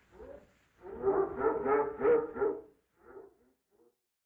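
Animal calls from the Hanna-Barbera zoo ambience sound effect: a run of pitched calls lasting about two seconds, then two short calls near the end.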